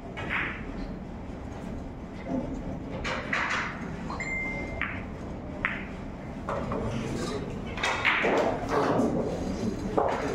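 Pool balls clicking as a shot is played on a nine-ball table, against the chatter and murmur of onlookers in a large hall. A short high ping is heard near the middle.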